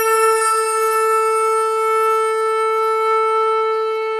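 One long, steady blown note of a conch shell (shankh), sounded as the call that opens an aarti, held at one pitch with a faint high shimmer above it.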